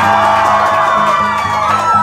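Acoustic guitar strummed in a steady rhythm, about four strokes a second, with held voices from the audience over it.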